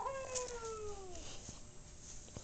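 A single faint cat meow that starts sharply and slides slowly down in pitch over about a second.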